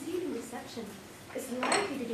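A woman's voice speaking, with one sharp clink of a small hard object, like china or metal, about three-quarters of the way through.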